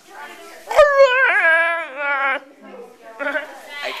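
A person making a drawn-out, high-pitched whining cry that wavers in pitch, lasting about a second and a half from about a second in, followed by shorter broken vocal sounds near the end.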